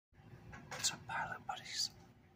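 A man whispering a few quiet words close to the microphone.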